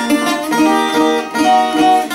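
Greek bouzouki played solo: a quick picked melody of single notes, changing several times a second.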